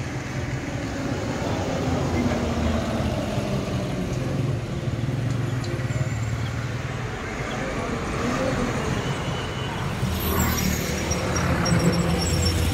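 Road traffic passing on a main road, heard as a steady rumble of engines and tyres.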